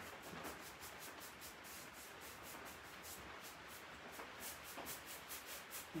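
Paintbrush stroking chalk paint onto wooden furniture in quick, faint, even swishes, several a second.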